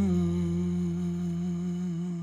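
A male singer holding one long final note, steady in pitch after a short slide into it, over a sustained low bass note; the sound grows slowly quieter as it fades out.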